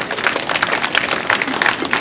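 A small crowd applauding, with individual hand claps standing out irregularly.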